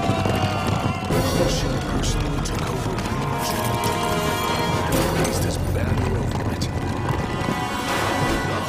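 Film battle sound: galloping horse hooves and whinnying mixed with soldiers shouting, over dramatic music.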